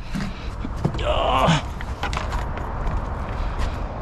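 Suzuki Alto's driver door unlatched from the inside handle and opened, then rustling and handling noise as someone climbs out, with a louder scraping burst about a second in and scattered clicks. The engine is off.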